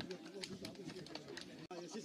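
Faint voices of players and spectators talking on a football pitch, with a few short sharp clicks and a brief gap in the sound near the end.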